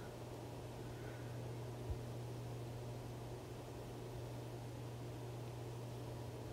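Quiet room tone: a steady low hum over faint hiss, with one soft tick about two seconds in.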